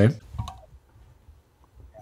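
A man's word cut short, then a near-quiet dead line with a few faint clicks: the phone-in call has failed to connect.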